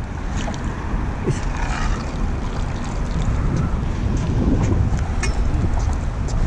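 Wind rumbling on the microphone, steady throughout, with a few faint scattered clicks over it.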